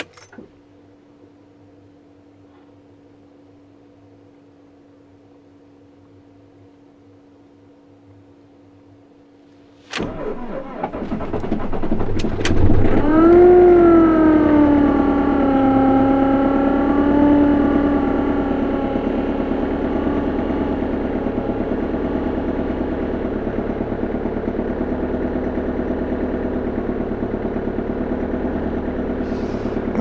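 Van engine cold-started at about minus 20 degrees. After a faint steady hum, the starter cranks for about two seconds and the engine catches with a short rev flare that eases down over several seconds into a steady idle, with a little bit of a funky sound at first.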